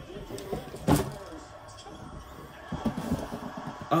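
Handling noise from a cardboard shoebox being fetched and picked up: a sharp knock about a second in, then rustling and light bumps.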